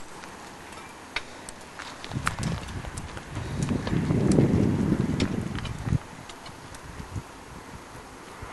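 Low rumble of wind buffeting a camcorder microphone, swelling from about two seconds in and cutting off suddenly a few seconds later, with scattered light clicks.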